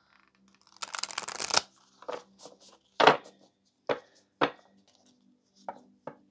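A large deck of oracle cards being shuffled by hand: a quick flurry of cards flicking against each other about a second in, then a string of separate sharp taps as cards drop onto the pile, the loudest about three seconds in.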